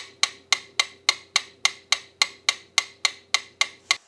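Stopwatch ticking sound effect: sharp, even ticks at nearly four a second, over a faint steady hum.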